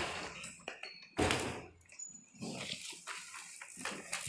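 Irregular bursts of rustling and handling noise, such as a plastic carrier bag being carried, with a brief faint high squeak about a second in.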